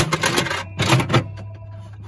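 Crank mechanism of a gashapon (capsule toy vending machine) being turned, giving a handful of sharp plastic-and-metal clicks in the first second or so. The coin is carried through and drops into the coin box at the bottom, which shows the coin mechanism is working.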